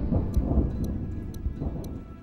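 Low, thunder-like rumble of cinematic intro sound design, swelling and steadily fading out, with faint sharp ticks about twice a second.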